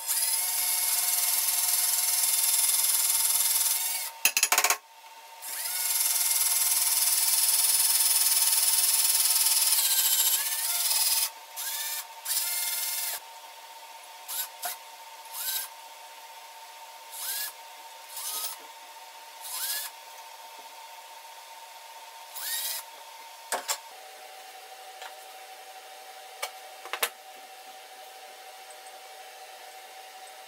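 Cordless drill boring into a raw carrot. Two long runs of several seconds each are followed by a string of short trigger bursts, each starting with a rising whine as the motor spins up. The drilling stops about two-thirds of the way through, leaving only a couple of sharp knocks.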